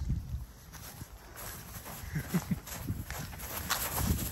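Cocker spaniel running through dry grass: paw falls and rustling of the grass, with a few short low sounds about halfway through and a low rumble of wind on the microphone.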